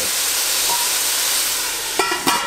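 Steady sizzling and steam hiss from sausage, onions and frozen broccoli cooking in hot oil in a stainless steel pot.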